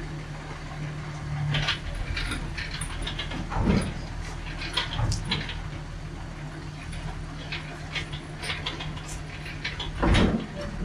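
A vehicle engine running steadily at idle, with scattered metallic clanks and knocks as a heavy diesel engine hanging from a shop engine hoist shifts and is drawn out of a truck's engine bay. The loudest clunk comes about four seconds in.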